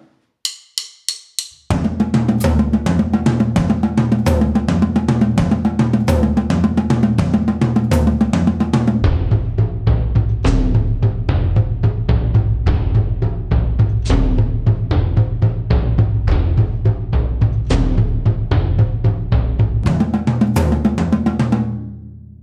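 Drum kit playing a groove in 13/16 odd meter, with hi-hat sixteenth notes over snare and bass drum. Four quick clicks count it in, and it fades out near the end.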